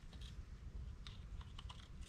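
Faint light clicks and taps of a gasket and small parts being handled against the water pump housing of a tractor engine, a quick cluster of them about a second in, over a low steady rumble.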